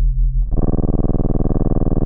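Low electronic sine tones pulsing about six times a second, then, about half a second in, a contrabass clarinet enters over them with a loud, low held note.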